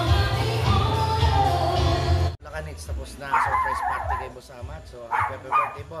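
Live band music with amplified singing and acoustic guitar, cut off abruptly about two seconds in. After the cut, a dog barks and gives a wavering whine.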